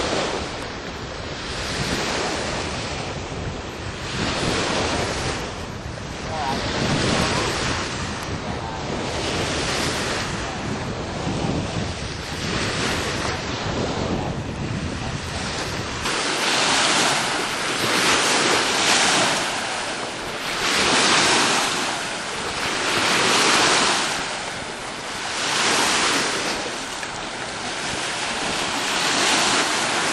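Small Lake Michigan waves breaking on a sandy shore, surging and easing every two seconds or so. Wind rumbles on the microphone through the first half.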